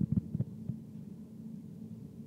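A steady low hum, with three or four dull thumps in the first half-second.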